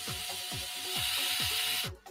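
Yellow cordless electric screwdriver running for nearly two seconds, driving a screw into a 3D-printed plastic frame, then stopping suddenly. Underneath, electronic music with a kick drum about twice a second.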